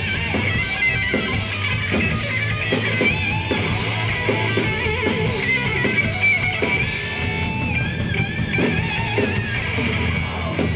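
Hardcore band playing live, loud: a distorted electric guitar plays wavering, bending lead lines over bass and drums.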